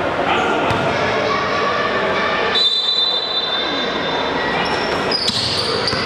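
Basketball bouncing on the court floor as it is dribbled during play, with voices and short high squeaks echoing around a large sports hall.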